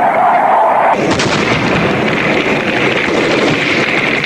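Vietnam War newsreel sound: an aircraft's engine note, falling slightly in pitch, gives way suddenly about a second in to dense, rapid crackling of gunfire and explosions.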